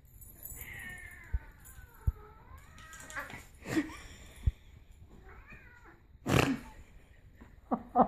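Domestic cat yowling: one long, wavering, drawn-out call, then a shorter one a few seconds later. Sharp knocks and brief noisy bursts come between them, the loudest just after six seconds.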